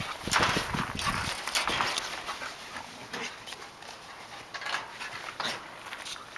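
A pack of huskies making excited noises and scuffling about as they jump up for food. The sounds are short, sharp and overlapping, busiest and loudest in the first two seconds, then thinning out.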